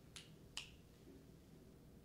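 Near silence: room tone with two faint, short clicks near the start, a little under half a second apart.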